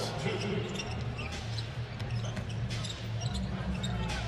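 A basketball being dribbled on a hardwood court during live play, with short sneaker squeaks over a steady low crowd murmur in the arena.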